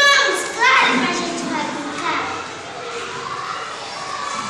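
Young children's high-pitched voices calling out and squealing while they play, loudest in the first second, then settling into overlapping chatter.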